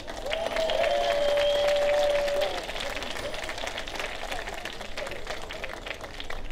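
Audience applauding with many hands clapping. A long held whoop from the crowd rides over the clapping in the first couple of seconds, after which the applause carries on more softly.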